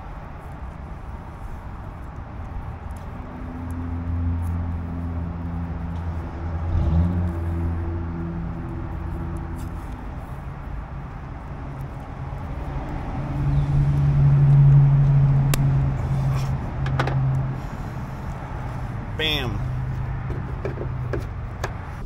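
A vehicle engine running steadily, its low hum growing louder about halfway through and easing off near the end, with a few light clicks of electrical tape being handled on trailer wiring.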